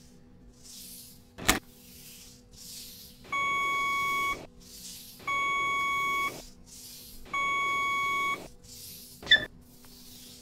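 Three long, identical electronic beeps, each about a second long and spaced two seconds apart, over a faint steady hum and a soft, regularly pulsing hiss. A sharp click comes about a second and a half in and another near the end.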